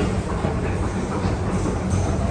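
New York City subway train running: a steady low rumble with faint clicks.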